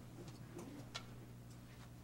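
Quiet room tone: a low steady hum with a faint click about a second in.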